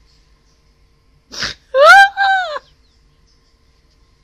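A sharp intake of breath, then a two-part high-pitched squeal from a woman, the pitch rising and falling on each part.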